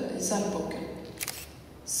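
A woman speaking Swedish, trailing off, then a short sharp double click a little after a second in, followed by a brief pause.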